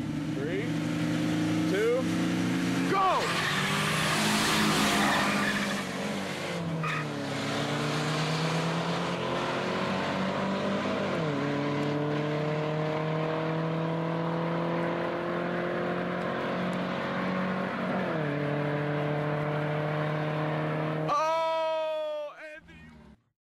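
Two street cars, a Datsun 280ZX Turbo and a Nissan 240SX, launching hard in a drag race with tyre noise from wheelspin. The engines then accelerate at full throttle, pitch climbing through each gear, with upshifts about 11 and 18 seconds in.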